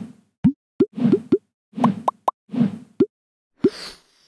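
Cartoon sound effects for an animated logo: a quick run of about a dozen short pops, soft low thuds alternating with rising 'bloop' glides.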